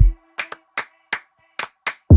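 Electronic dance track in a breakdown: the bass and full beat cut off at the start, leaving about seven sharp clap-like percussion hits in an uneven rhythm over a faint held synth tone.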